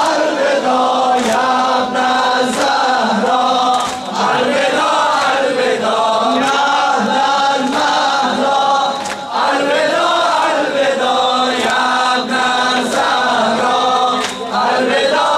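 A Shia mourning lament (noha) chanted in unison by a crowd of men in a large hall, in a slow, repeating melody. Sharp slaps of hands striking chests in sinezani are heard now and then.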